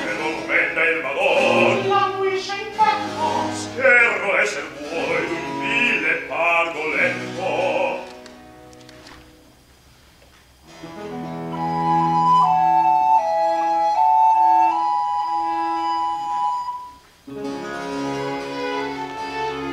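Two male opera singers sing a passage with wide vibrato over a chamber orchestra with harpsichord. About eight seconds in the music drops almost to silence. A few seconds later a sustained high melodic line enters over a low held note, and the full ensemble comes back in just before the end.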